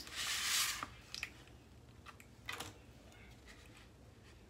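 Foam board pieces being handled on a table: a short rubbing swish, then a few light taps and clicks as a strip is set down.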